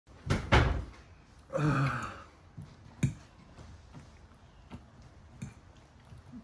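Two knocks in quick succession near the start, then a short groan from a man about a second and a half in, followed by a few light clicks of a metal fork against a ceramic bowl.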